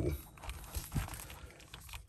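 A few faint, short clicks and rustles of hands handling a large plastic NECA Chrome Dome action figure.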